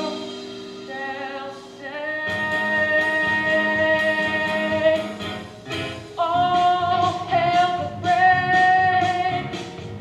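A boy singing a solo song from a stage musical over instrumental accompaniment, holding two long high notes, the first from about two seconds in and the second from about six seconds in.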